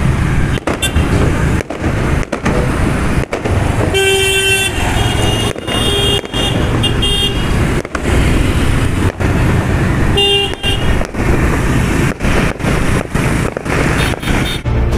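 Busy road traffic with a steady rumble and car horns honking several times: a long toot about four seconds in, more honks over the next few seconds, and another near ten seconds.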